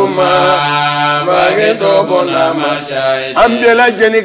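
A man's voice chanting in long, drawn-out melodic notes that slide from one pitch to the next, without clear spoken words.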